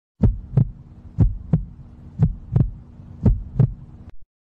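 A heartbeat sound: four low double thumps, about one pair a second, over a faint steady hum.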